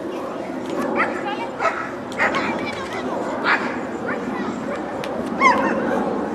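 German Shepherd dogs yipping and barking in several short, sharp calls over a steady murmur of voices.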